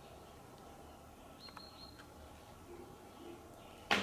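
Quiet room with a brief high chirp about a second and a half in and a sharp knock near the end.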